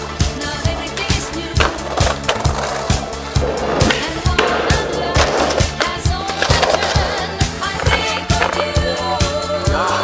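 Music with a steady beat, mixed with skateboard sounds: wheels rolling on concrete and trucks grinding along a concrete ledge.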